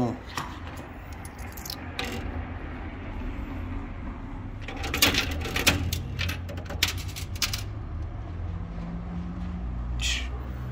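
Coins clinking inside a coin-pusher arcade machine, in scattered metallic clinks with a dense cluster about five seconds in and more near seven seconds, over the machine's steady low hum.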